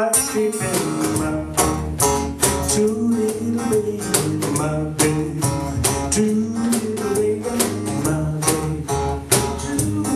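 Acoustic guitar strummed and picked over a steady beat struck on a cajón, in an instrumental passage with no lead vocal.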